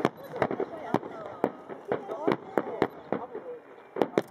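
Aerial firework shells bursting in a rapid run of sharp bangs, about two a second.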